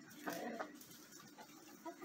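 A chicken clucking faintly, once and briefly, near the start.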